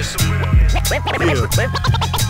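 Turntable scratching: rapid back-and-forth swoops of a cut-up sample over a hip hop beat with a steady bass line and drum hits.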